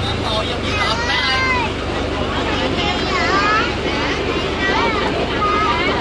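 River passenger boat's engine running steadily under continuous passenger chatter, heard from inside the covered cabin.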